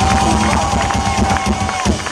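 Metal band playing live at full volume: heavy bass and drum hits under one long held shout from the singer, with the crowd cheering. The band's loud sound cuts off a little before the end.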